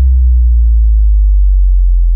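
A deep, loud electronic sub-bass tone held steady, like a sustained 808 bass note, while a fading wash above it dies away in the first second or so.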